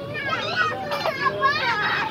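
Several children's high-pitched voices shouting and chattering over one another as they play.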